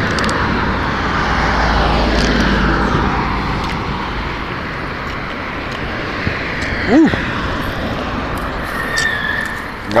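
An aircraft passing overhead: a broad rushing engine noise whose pitch slides slowly downward as it fades over several seconds. A short rising-and-falling tone stands out about seven seconds in.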